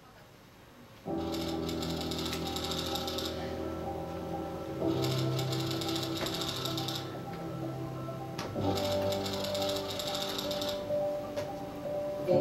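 Soundtrack music with sustained chords, over which a typewriter-style typing sound effect clicks rapidly in three runs of about two seconds each, the first starting about a second in.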